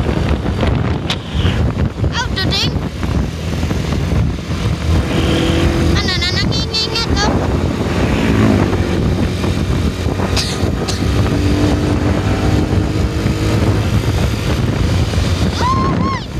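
A vehicle driving fast behind a coach, with a constant rush of engine, tyre and wind noise buffeting the microphone. Short wavering high tones sound briefly about two and a half seconds in and again around six seconds in.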